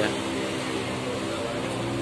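Wheel balancing machine spinning a mounted wheel: a steady, even-pitched motor hum.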